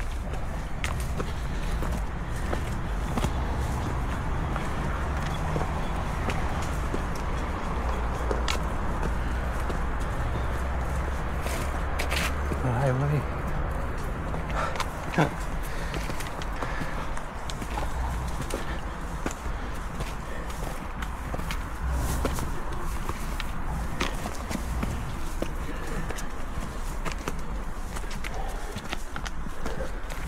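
Footsteps of trail runners climbing a steep, wet, muddy path through grass and undergrowth: irregular short steps over a steady low rumble.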